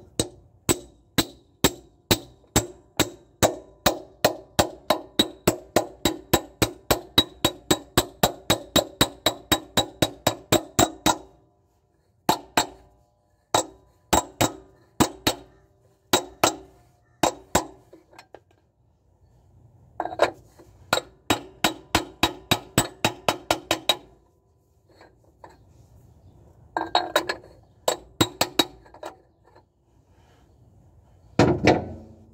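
Hammer striking a steel hub on the crankshaft nose of a diesel engine: sharp ringing metallic taps, about three a second for the first eleven seconds, then in shorter runs with pauses between.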